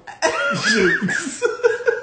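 A woman and a man laughing together, starting a moment in.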